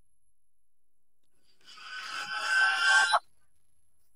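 A metallic ringing swell, a dramatic sound effect, grows louder for about a second and a half and then cuts off abruptly.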